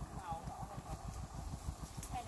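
Faint, indistinct talk among a few people, over a constant low fluttering rumble on the microphone.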